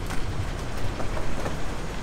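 Steady rumbling noise of a bus and surrounding traffic as passengers step off, with a few light knocks of footsteps and luggage.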